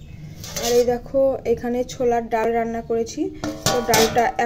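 A woman talking, with a sharp clink of metal dishes near the end.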